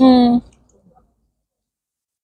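A woman's voice briefly holding one steady, level-pitched sound, a drawn-out "mm", then silence for the rest.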